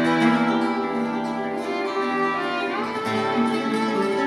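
Violin playing a melody in long held notes over a Spanish guitar accompaniment, a live acoustic violin and guitar duo.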